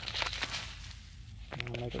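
Loose garden soil being poured from a plastic nursery pot into another pot, a brief crackling rustle of falling crumbs in the first half second.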